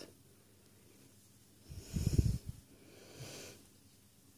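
A person breathing close to the microphone: one louder breath about two seconds in, then a softer one shortly after.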